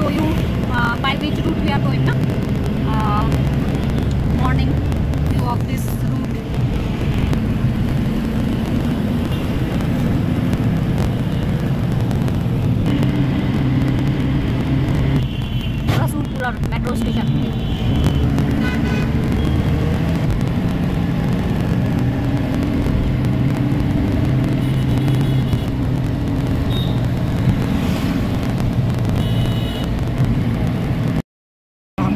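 Engine and road noise heard inside the cabin of a moving Tempo Traveller minibus: a loud, steady low rumble.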